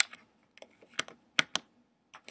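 A run of sharp, irregular clicks and taps, about five strong ones in two seconds, as small hard objects are handled close to the microphone.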